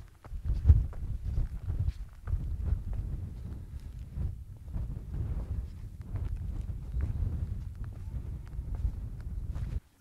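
Footsteps of a hiker climbing a rough stony and grassy fell path, under a gusting low rumble of wind on the microphone. The sound cuts off suddenly just before the end.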